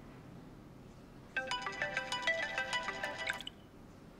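Smartphone ringtone: a quick melodic run of short chiming notes that starts about a second and a half in and cuts off after about two seconds as the call is answered.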